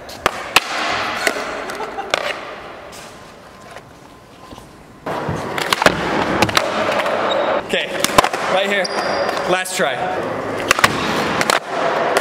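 Skateboard with a hinged folding deck rolling on concrete and ramp surfaces, with several sharp clacks of the board. The rolling fades to a quieter stretch, then comes back loud about five seconds in, with more sharp clacks.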